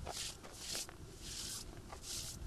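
Faint, short swishes a few times, one about every two-thirds of a second: a hand brushing across the face of a fallen stone gravestone.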